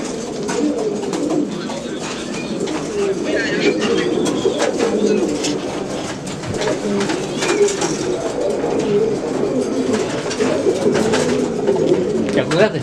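Many domestic pigeons cooing together in a loft, a continuous overlapping warble, with scattered sharp clicks throughout.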